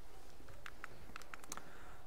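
Faint, quick clicks of keys being tapped on a keyboard, about eight of them within a second or so, over quiet room hiss.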